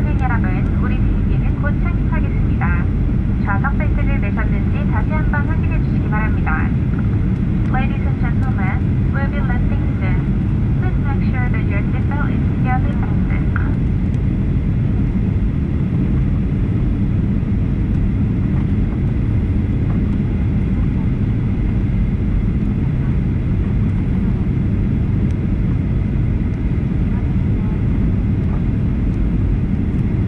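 Steady cabin roar inside a Boeing 737 in flight on its descent: the low, even rumble of engines and airflow heard from a window seat over the wing.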